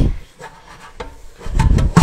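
Kitchen cleanup handling sounds: a few faint knocks, then a louder low thump in the last half second.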